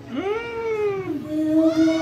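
A single voice slides up in pitch, holds briefly and falls away over about a second, then a steady held note follows.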